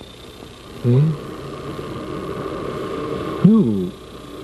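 Film dialogue: a voice speaks briefly about a second in and again near the end, with a steady sustained sound in between.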